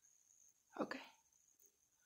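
A woman says a single short "Ok" a little under a second in. Otherwise near silence, with a faint steady high-pitched whine.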